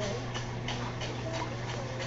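Steady low mechanical hum with faint, irregular light ticks.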